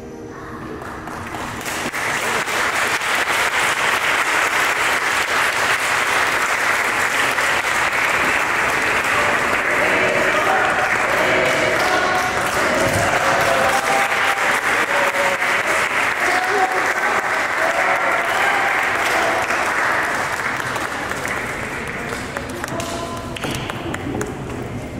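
A congregation applauding, with scattered cheering voices mixed in; the clapping swells up over the first couple of seconds, stays loud, and thins out near the end.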